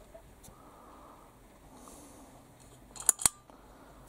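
Quiet room tone, broken about three seconds in by two sharp clicks a fraction of a second apart.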